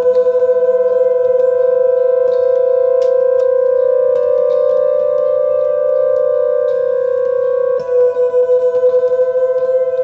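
Music: a held keyboard chord of steady, sustained tones. The chord is sounded again about eight seconds in, with a brief wavering pulse in loudness.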